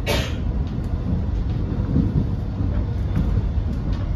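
Steady low rumble of an X'Trapolis electric train running over the tracks, heard from inside the carriage, with a brief hiss right at the start and a few faint clicks of the wheels over rail joints.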